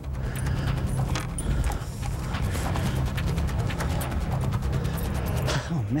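A man breathing hard, catching his breath after fighting a big bass, over a low background music bed.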